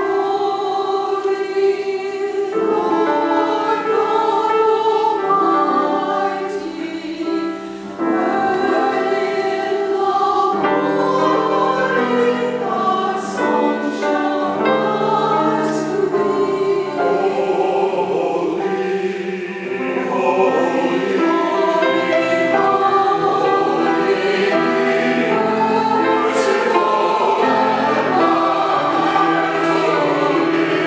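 Church choir of mixed men's and women's voices singing together in sustained phrases, with short breaks between the lines.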